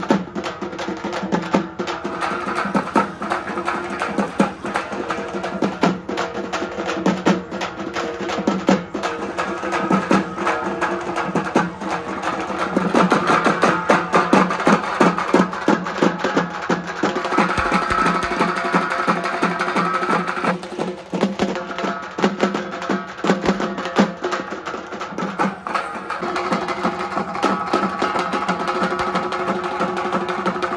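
A troupe of drummers beating large shoulder-slung drums with sticks in a fast, dense rhythm, getting louder through the middle of the stretch.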